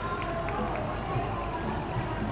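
Steady outdoor background noise with indistinct voices and music mixed in.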